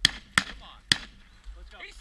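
Three sharp gunshots in quick succession: one right at the start, the next under half a second later and the third about half a second after that.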